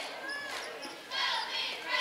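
Basketball being dribbled up the court on a hardwood gym floor, heard through the echo of the gym with faint voices from players and crowd.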